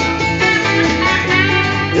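Live band music led by strummed acoustic guitars, playing steadily, with a voice coming in at the very end.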